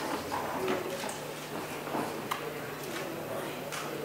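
Hall ambience: faint room murmur with scattered light clicks and knocks, about one a second.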